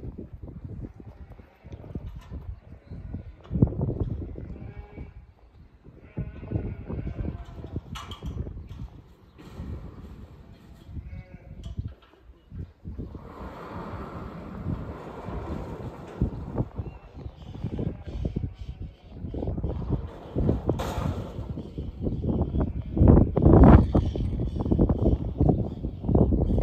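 Sheep bleating repeatedly, a series of short calls, over an uneven low rumble that grows louder toward the end.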